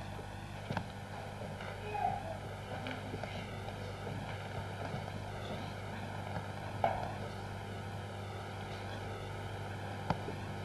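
Steady electrical mains hum and hiss of an old videotape recording, with a few brief faint sounds from the stage, the clearest about seven seconds in.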